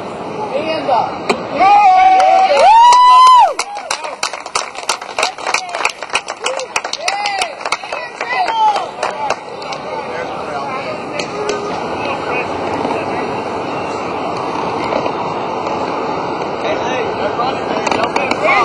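Spectators cheering: a very loud, high-pitched yell close by about two to three seconds in, with rapid clapping and more shouts until about halfway through, then a steady crowd murmur.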